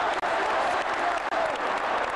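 Large football stadium crowd, a dense mass of voices shouting and cheering as play goes on, recorded through a camcorder's built-in microphone. The sound cuts out for an instant shortly after the start.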